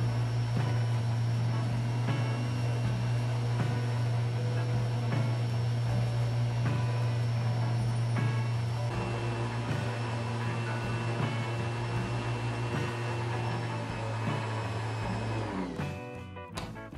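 Electric random orbital sander running steadily as a small wooden shovel-handle plug is held against its sanding disc; the motor stops near the end. Background music plays underneath.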